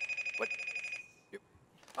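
Telephone ringing for an incoming call: a steady, high trilling ring that stops about a second in.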